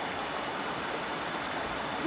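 Steady rush of running water from a stream.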